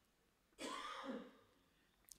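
A man briefly and softly clearing his throat, about half a second long.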